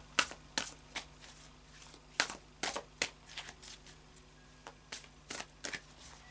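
Tarot deck being shuffled by hand: a string of irregular sharp card snaps.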